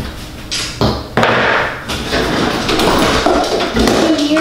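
Small items being picked up and set down on a bathroom counter, with several sharp clicks and knocks in the first second and a short rushing noise just after.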